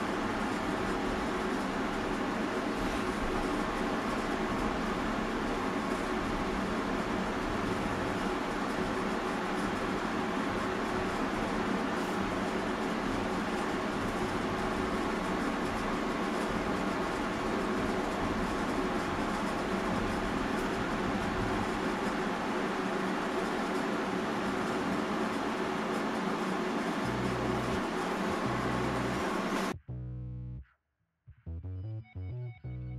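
Steady machine hum and hiss, like a fan or air conditioner running, unchanging until it cuts off abruptly near the end.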